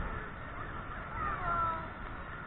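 Steady rush of churning water below a large waterfall, with one short wavering cry rising and falling a little after a second in.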